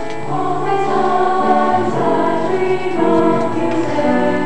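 A mixed choir of young men and women singing in parts, holding long chords that move to a new chord every second or so.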